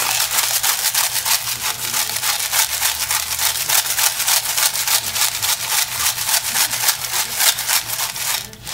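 Salt grinder being twisted over the pan: a dry, rasping grind in quick, even strokes, many a second.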